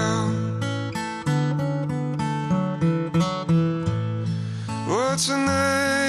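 Steel-string acoustic guitar playing chords, strummed and picked, in an instrumental passage of a folk-pop song. About five seconds in, a singing voice slides up into a held note over the guitar.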